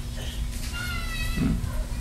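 A high, thin, slightly wavering cry drawn out for about a second, starting a little way in, in the manner of a cat's meow.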